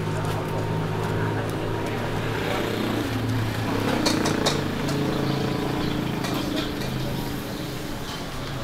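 City street at night: a steady low hum of vehicle traffic mixed with the chatter of passers-by, with a few light clicks about halfway.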